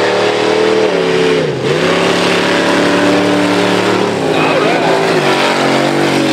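Mud-racing pickup truck engines running hard at high revs, holding a steady note. The pitch dips and climbs back about a second and a half in, then wavers again a little past four seconds.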